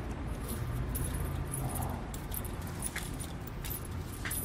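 Light metallic jingling from people on the move, heard as scattered short clinks over a low, steady rumble of outdoor noise.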